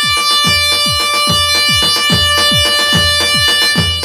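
Iraqi chobi dance music played on an electronic keyboard: a reedy held note, bagpipe-like, over a quick, steady beat of deep drum hits that slide down in pitch. There is no singing.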